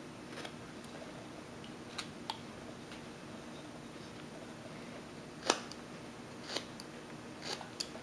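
Carving knife slicing small chips off a wooden figure: about seven short, sharp cuts, the loudest about five and a half seconds in, over a faint steady hum.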